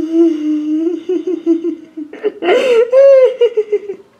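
A young woman's nervous, high-pitched laughter. It starts as a held, quavering tone and breaks into louder, higher laughs after about two seconds. It is fearful laughter at a cockroach she hates.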